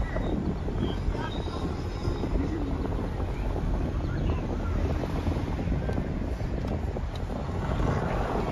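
Car driving slowly, heard from inside the cabin: a steady low road and engine rumble with wind noise.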